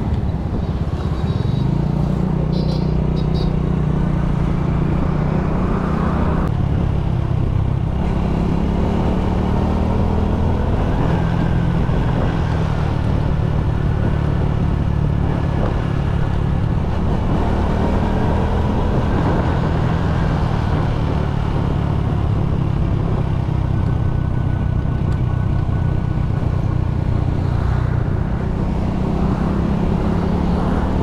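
Honda Winner X motorcycle's single-cylinder four-stroke engine running under way, its pitch shifting up and down several times with throttle and gear changes.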